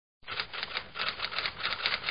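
Typewriter keystroke sound effect: a rapid, even run of clacking keys, about six or seven a second, starting just after the opening, laid over typed-out title text.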